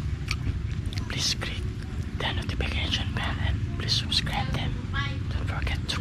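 Crunching and chewing a crisp cracker close to the microphone, in irregular short bursts, over a steady low rumble.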